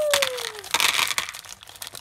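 Plastic candy wrappers being crinkled and torn open by hand, crackling in irregular bursts with the loudest burst about a second in. A shouted "woo" trails off in the first half-second.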